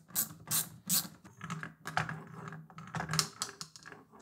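Hand screwdriver turning a small screw into a plywood part, a string of irregular sharp clicks and small knocks.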